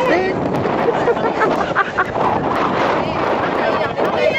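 Steady wind noise on the microphone, with a few brief voices of people chatting nearby.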